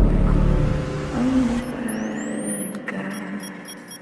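Edit sound effects: a deep boom fading away, with two rising high whistles about two seconds in, the whole dying down near the end.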